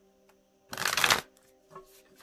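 A deck of divination cards being shuffled by hand: one loud burst of cards flicking together about a second in, lasting half a second, then a shorter, softer one near the end.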